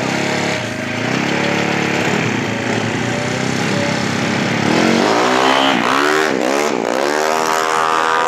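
Modified belt-drive automatic scooter drag bike's engine held high on the start line. About five seconds in it launches: the note climbs steeply, dips and climbs again several times as it accelerates away down the strip.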